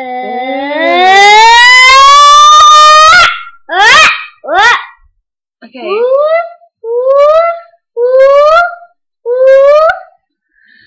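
A young girl's wordless, loud vocal calls: one long call sliding upward in pitch for about three seconds, then two quick upward swoops and four shorter calls, each rising in pitch.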